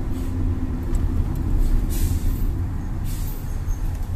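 Steady low road and engine rumble heard inside a moving car's cabin, with a couple of brief hissing swells about two and three seconds in.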